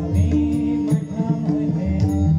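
Harmonium holding and changing melody notes over pakhawaj and tabla drumming, an instrumental passage of a devotional bhajan.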